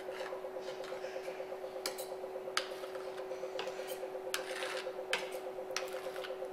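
Chocolate tempering machine running with a steady hum and a fast, regular pulse. A metal palette knife scrapes and clicks against a chocolate mould a few times over it as excess tempered chocolate is cleared off.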